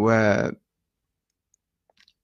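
A man's voice holding a drawn-out hesitation sound for about half a second, then dead silence with a faint click near the end.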